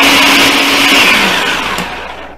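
Electric food processor running with its blade chopping a batch of cabbage, its motor hum steady at first, then falling in pitch as it spins down about a second in.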